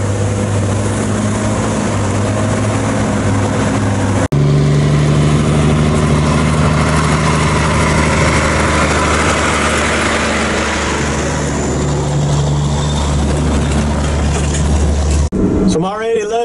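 Diesel engine of a semi truck pulling a loaded lowboy trailer, running steadily as it comes up a dirt road. The sound breaks off abruptly about four seconds in and comes back deeper and louder, then breaks off again near the end.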